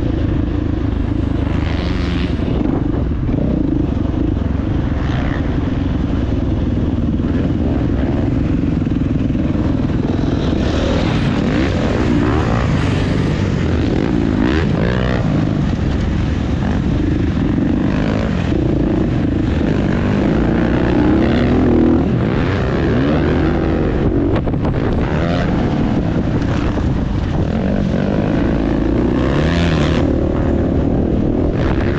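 Dirt bike engine ridden hard, revving up and falling back again and again through the corners and straights, heard up close from a helmet-mounted camera.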